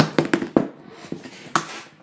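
Parts of a small alcohol stove being handled, giving a quick series of light clicks and taps, then a brief scraping hiss about a second and a half in.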